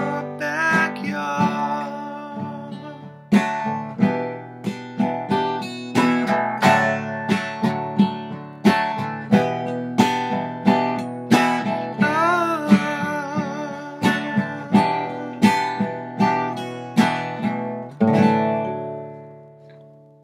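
Acoustic guitar strummed on its own as the song closes: after a fading chord, steady strummed chords run about one and a half a second, then a final chord about 18 seconds in rings out and dies away.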